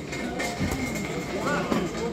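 A football kicked once from a free kick, a single sharp thud about half a second in, over players' voices and a steady background rumble.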